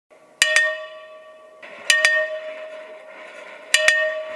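Brass ship's bell struck three times in quick double strikes, the pairs about a second and a half apart, each pair left ringing.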